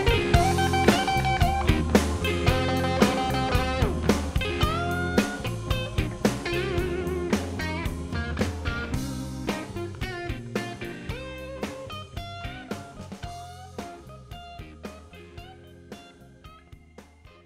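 Instrumental ending of a blues song: guitar lead with bent notes over bass and drums, fading out steadily.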